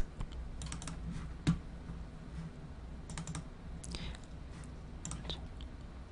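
Faint, irregular clicks of a computer keyboard and mouse, a dozen or so scattered taps, over a low steady hum.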